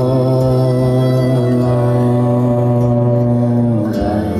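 Live worship band music: a male singer with acoustic guitar holds one long sung note over a steady low accompaniment, letting it go near the end as the next line begins.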